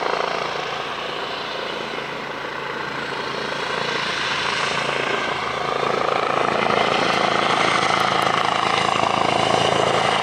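Eurocopter EC135 T2+ twin-turbine helicopter flying overhead on approach to land, its rotor and engines heard steadily from the ground. The sound dips slightly a couple of seconds in, then grows louder toward the end as it comes closer.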